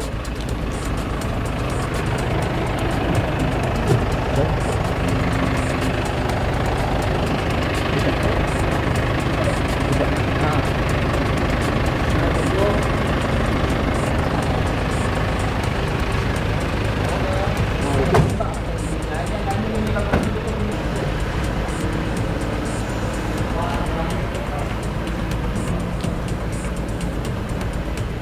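Steady rumble of a vehicle engine running close by, under the indistinct voices and shuffling of a crowded press scrum, with a single knock about two-thirds of the way through.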